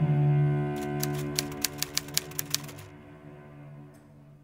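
Low sustained bowed-string music fading out, with a quick run of about a dozen typewriter keystroke clicks starting about a second in and lasting about two seconds.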